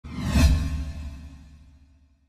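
Whoosh sound effect over a deep low boom for an animated title intro, swelling to a peak about half a second in and then fading away.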